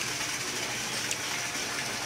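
A small fountain jet of water arcing into a swimming pool, splashing into the water as a steady, even rush.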